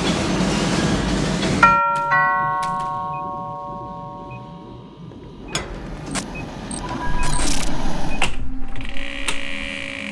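A two-note doorbell chime, struck twice in quick succession about two seconds in, its tones ringing out and fading over a few seconds. It cuts across loud film soundtrack noise, which stops suddenly as the chime sounds. Scattered clicks and a short rustling stretch follow later.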